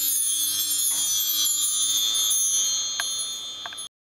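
Mark tree (bar chimes) swept by hand, its many small metal bars ringing high and slowly fading. Beneath it the acoustic guitar's last low note dies away, and the sound cuts off abruptly just before the end.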